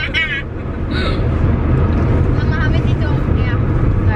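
Steady low rumble of a car driving, heard inside the cabin. A woman laughs at the start, and faint voices come about halfway through.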